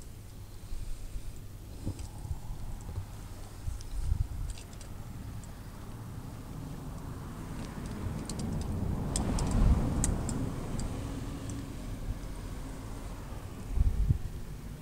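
A vehicle passes, building to its loudest a little past the middle and fading again, over a low steady rumble. Light clicks and rustles come from a garden hose being coiled by hand.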